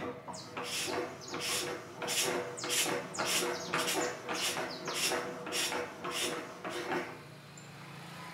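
Homemade air compressor head, a motorcycle cylinder and piston on a motorcycle crankshaft, being turned over slowly: a rhythmic hissing, rasping stroke about twice a second as the piston pumps air.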